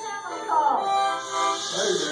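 A harmonica playing a few held notes, with people talking in the room over it.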